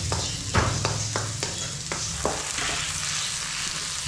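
Chopped onions frying in hot oil in a wok: a steady sizzle, with a wooden spatula scraping and knocking against the pan about six times, mostly in the first half.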